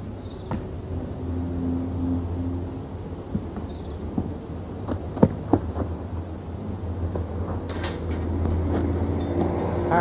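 A car engine's low hum on the street, swelling as it passes around two seconds in and again near the end, with a few short knocks between.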